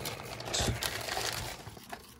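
White protective wrapping crinkling and rustling as a camera is pulled out of it by hand. The rustling is loudest about half a second in and fades toward the end.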